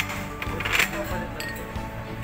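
Glasses and dishes clinking on a dining table, with the loudest clatter a little under a second in, over steady background music.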